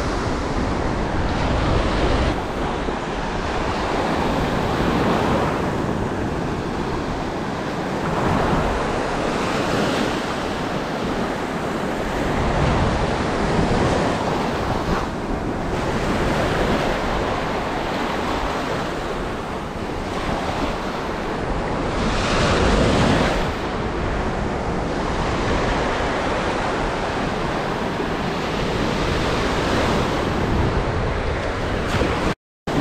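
Ocean surf breaking and washing up a sandy beach at close range, swelling and easing with each wave, with one louder surge about two-thirds of the way through.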